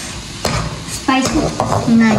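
Sweet corn kernels and onion frying in butter in a kadai, sizzling as a metal slotted spatula stirs them, with a sharp clink of the spatula on the pan about half a second in.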